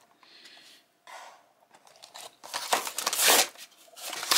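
Cardboard backing of a toy car's blister card being torn open by hand: a few faint rustles, then a loud rip about two and a half seconds in.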